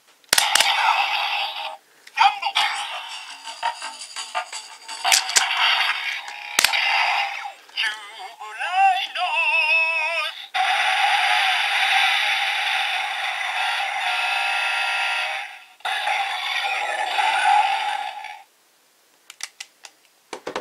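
Electronic sound effects, synthesized voice and music played through a roleplay toy's small speaker, in several bursts with a warbling tone about halfway through. The sound is thin, with no bass, and it cuts off shortly before the end.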